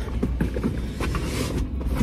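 Rustling of clothes and small handling knocks as a person twists round in a car seat and reaches between the seats, over a low steady rumble.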